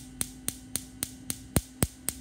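Rapid, regular clicking, about four clicks a second, some much louder than others, over a steady low hum.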